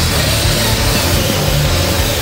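Loud rock background music with a steady grinding underneath it from a wall chaser, a twin-blade concrete saw, cutting into a concrete-block wall.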